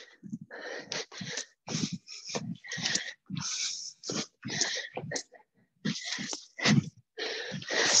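A person breathing hard in short, rhythmic huffs, about two a second, keeping time with jumping squat jacks.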